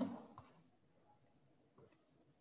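Near silence with a couple of faint, short clicks in the first half second and a tiny tick near the end.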